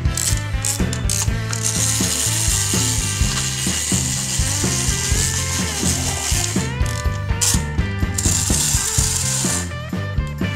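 Small plastic toy bus's pull-back motor whirring and clicking as its wheels are run back and let go, in two long stretches, over background music.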